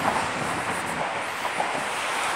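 Steady rushing noise of road traffic crossing the bridge, with no distinct single vehicle standing out.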